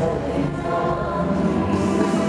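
Live concert music from a band amplified through a PA, with sustained singing by several voices over the accompaniment.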